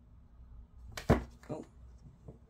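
Tarot cards being handled: a card snapped down sharply about a second in, then a second, softer card sound half a second later.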